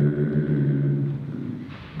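A man's long drawn-out hesitation sound, a steady 'yyy' held at one pitch for nearly two seconds, then fading near the end.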